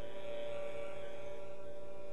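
Barbershop quartet of men's voices singing a cappella, holding one long steady chord.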